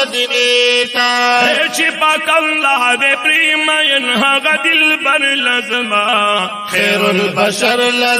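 Men's voices singing a Pashto naat, a devotional song, in layered chorus. They hold long notes over a steady low drone, with no clear words.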